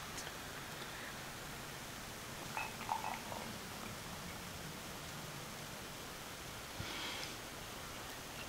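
Faint sound of carbonated water being poured from a glass bottle into a glass, mostly lost under steady low hiss. There are a few small sounds about three seconds in and a brief faint fizzing hiss near the end.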